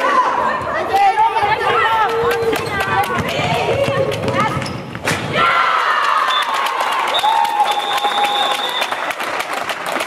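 Players' voices calling and shouting across a reverberant sports hall, with a handball bouncing and thudding on the floor.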